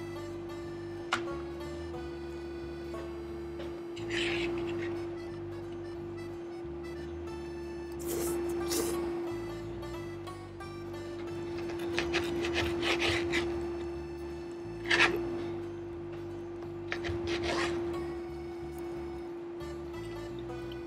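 Background music with a steady held note under close-miked eating noises: a sharp click about a second in, then several short bursts of chewing and fork-on-plate sounds, the loudest about three quarters of the way through.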